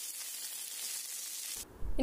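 Fresh drumstick leaves sizzling in hot oil with a mustard-seed and dry-chilli tempering: a steady high hiss that cuts off suddenly near the end.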